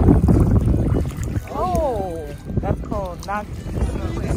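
Wind buffeting the microphone over small waves washing onto the sand at the water's edge. A high voice calls out twice in the middle, first with a falling call and then with a couple of shorter rising ones.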